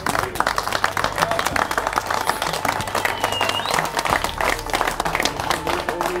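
An audience clapping and applauding steadily, greeting the announced winners.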